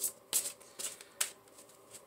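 Tarot cards being handled or shuffled: four short, crisp card snaps and rustles about a third to half a second apart.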